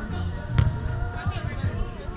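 A volleyball struck once with a sharp slap about half a second in, a pass or hit in a beach volleyball rally, over background voices and music.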